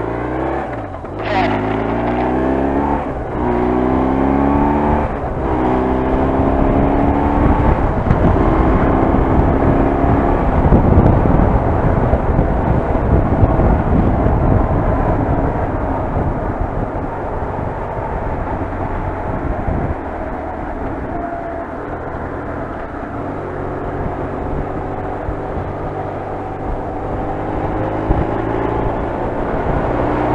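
BMW R1150RT-P police motorcycle's flat-twin boxer engine, heard from the rider's seat, pulling away and revving up through the gears in four rising steps, each broken off by a shift. It then settles into steady wind noise and engine hum at cruising speed, and the engine note climbs slowly again near the end.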